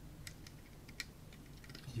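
Faint small metallic clicks of an Allen key being seated in and working the grub screw on the side of a Loknob ABS guitar-pedal knob: a few light ticks, the sharpest about a second in.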